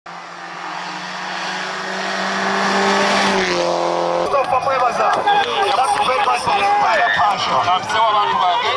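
Rally car engine approaching at speed on a dirt stage, growing louder and dropping in pitch as it passes about three and a half seconds in. Then a sudden change to many overlapping voices with scattered clatter.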